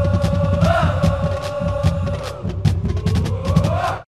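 Outro music for a logo animation: drum hits and a pulsing bass under a held tone that swells twice, cutting off suddenly at the end.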